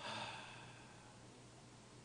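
A man sighing into a handheld microphone: one short breath out, loudest at the start and fading within about half a second, then only a low steady hum.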